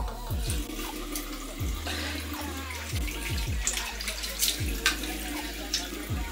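A bathroom tap running into a sink with splashing water, as when skincare cleanser is being rinsed off the face. Background music with a deep, repeating bass beat plays underneath.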